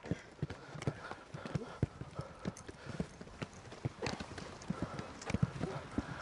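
Many irregular thuds of Gaelic footballs being bounced and soloed off the foot by a group of jogging players, mixed with their running footsteps on artificial turf.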